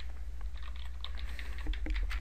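Typing on a computer keyboard: a short run of light keystrokes entering a formula name, some about half a second in and more near the end.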